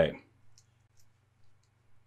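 A man's voice trails off at the very start, then a few faint, sharp computer mouse clicks come spread over the next two seconds, over a faint low hum.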